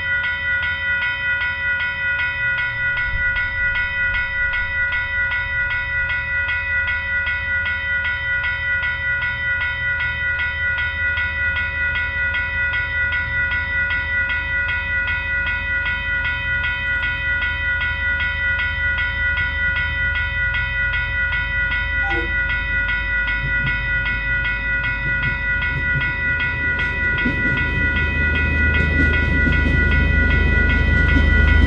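Diesel-hauled push-pull commuter train approaching on the track, the DC-class locomotive's low rumble swelling near the end as it draws close. A steady, pulsing high whine of several tones runs under it throughout.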